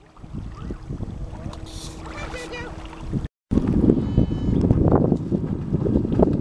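Wind buffeting the microphone over an open lake, with faint distant voices. It drops out briefly about halfway through, then comes back louder.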